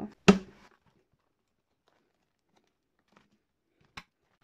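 Metal rings of a ring binder snapping shut: one sharp, loud click just after the start, then near silence with a couple of faint ticks near the end.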